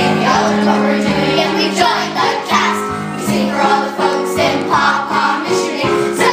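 A group of children singing a song together with musical accompaniment.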